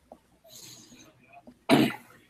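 A person's single short cough near the end, heard over a video-call line.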